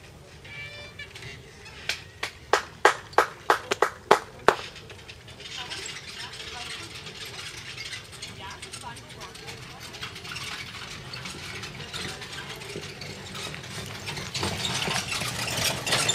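About nine sharp hand claps close to the microphone in quick, uneven succession, followed by softer background voices and noise.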